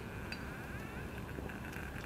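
Evernew titanium alcohol stove burning with a faint steady hiss as it comes up to full bloom, with a few faint ticks.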